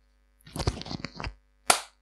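Close handling noise: a quick run of small knocks and clicks, then one sharp smack that dies away fast.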